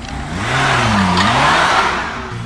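Maruti Gypsy jeep accelerating away on a dirt road: the engine revs up, drops in pitch about a second in, then climbs again, while the tyres spray gravel and dust, loudest in the second half.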